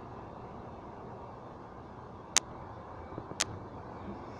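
Steady outdoor background hiss with two sharp clicks about a second apart in the second half.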